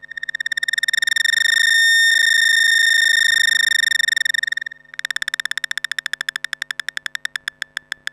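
Eurorack modular synthesizer (Mutable Instruments Stages, Tides and NLC Neuron) playing a high, buzzy pitched tone that swells in over the first second and holds. It cuts off just under five seconds in and comes back as a fast train of clicking pulses that slow down steadily.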